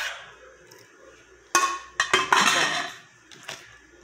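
Plastic food-storage containers and utensils clattering as they are handled: quiet at first, then a few sharp knocks about a second and a half in, followed by a short rattling stretch and a faint click near the end.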